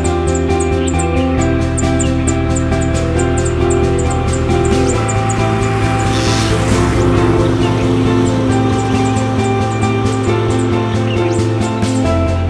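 Background music: held chords over a low bass that changes note about a second in and again about five seconds in, with a fast, even, high ticking that is strongest in the first half.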